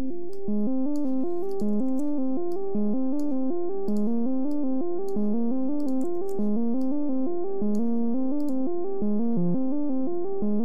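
Software modular synthesizer (VCV Rack VCO-1 oscillator through the VCF filter) playing a repeating diatonic step sequence with short, plucky notes. The pitch climbs in short stepped runs and drops back, about five notes a second.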